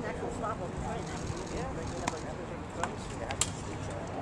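Several sharp smacks of baseballs off bats and into leather gloves during infield fielding practice, the loudest about three and a half seconds in, over indistinct voices of players talking on the field.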